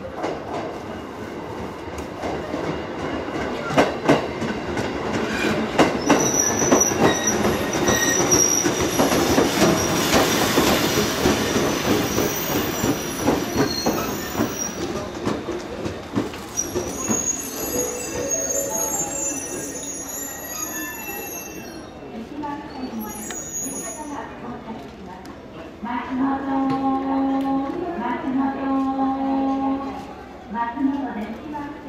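Electric passenger train pulling into a station platform, its wheels clacking over rail joints and its brakes squealing high as it slows to a stop. Steady electrical tones follow once it has halted, growing louder near the end.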